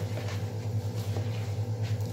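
Hands kneading a soft, sticky buckwheat and cottage-cheese pierogi filling in a plastic bowl, faint squishing over a steady low hum.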